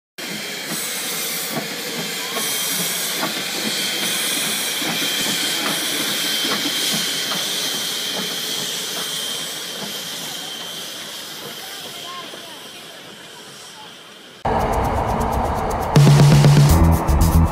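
Steam locomotive No. 448 moving slowly, steam hissing steadily from near its wheels with faint scattered clicks, fading as it moves away. About fourteen and a half seconds in it cuts off suddenly and loud electronic music starts.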